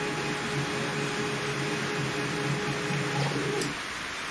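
Stepper motors of a DIY CNC router driving an axis as it is jogged from an SMC5-5-N-N offline controller: a steady, slightly pulsing hum with a higher whine on top, which cuts off just before the end when the move finishes.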